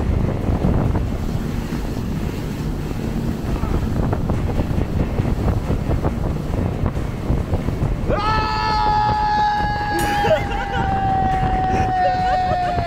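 Speedboat running at speed over open water, with a steady rumble of engine and hull and wind buffeting the microphone. About eight seconds in, a man lets out one long held shout that lasts to the end.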